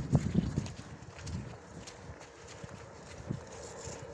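Horse's hooves thudding dully on soft, muddy ground: a quick run of steps at the start, then only a few scattered steps.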